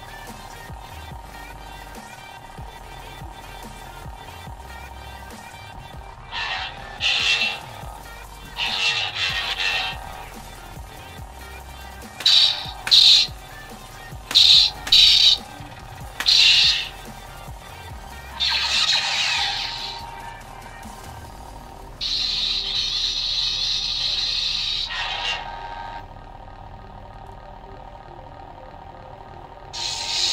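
Budget LGT RGB lightsaber's sound board playing the Electrum sound font: a steady electronic hum, with swing whooshes as the blade is moved, some in quick pairs, and a louder steady stretch of about three seconds later on.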